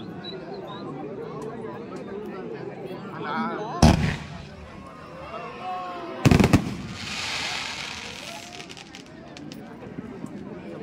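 Aerial fireworks bursting overhead: one loud bang about four seconds in, then a quick cluster of bangs about two seconds later, followed by a crackling hiss as the shells open. Voices of onlookers carry on underneath.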